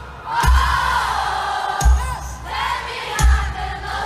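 Live band music heard from the audience, with a heavy low beat about every second and a half, a singer's voice over it, and crowd noise.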